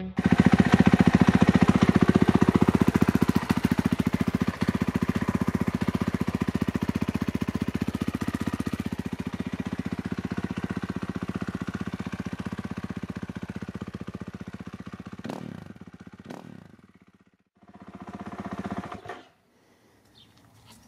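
A 2019 Husqvarna FC 450's single-cylinder four-stroke engine running, with a fast, even beat that slowly grows quieter. A couple of sharp strokes come about three-quarters of the way through before the sound drops away, then a short burst of engine sound follows near the end.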